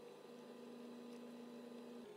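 Faint, steady electrical hum made of a low tone with a second one above it. The lower tone becomes clearer and steadier about a quarter-second in.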